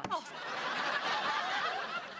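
Sitcom studio audience laughing: a swell of many people's laughter that builds just after the start and holds.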